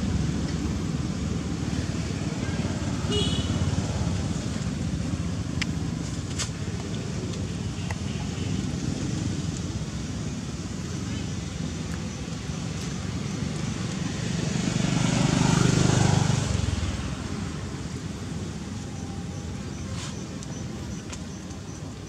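Steady outdoor background rumble, typical of nearby road traffic, with indistinct voices. About fifteen seconds in, a vehicle passes: its sound swells, peaks and fades over two or three seconds, the loudest moment.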